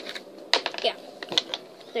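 A few short, sharp clicks and taps as jelly beans and their small box are handled and set down.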